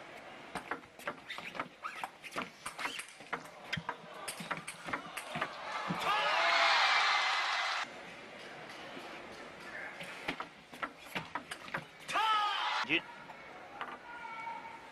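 Table tennis rally: the celluloid ball clicking in quick succession off rubber bats and the table. About six seconds in comes a burst of crowd cheering and applause with a shout, and near the end a short loud shout.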